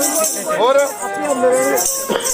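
A man singing in Punjabi folk style, his voice rising and falling, over a shaken jingling rattle.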